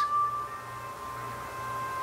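Soft background music of held, ringing tones. One high note gives way to a slightly lower one about half a second in, with a fainter tone above it.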